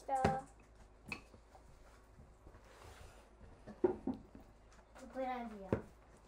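A child's voice in short snatches, with a few light knocks between them in a small room.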